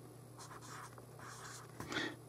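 Marker pen drawing on paper: a few faint, short scratchy strokes over a low steady hum.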